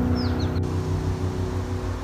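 Held notes of soft ambient music dying away over a low rumble, with a quick run of high, falling bird chirps near the start.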